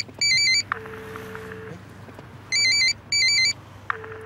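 A telephone ringing in pairs of short warbling trills, the loudest sound, twice. Between the rings a steady low ringback tone sounds for about a second, starting with a click, as the hands-free call dialled by voice rings out.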